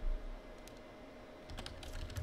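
Typing on a computer keyboard: scattered key clicks, coming faster about a second and a half in, with a low thump at the very start.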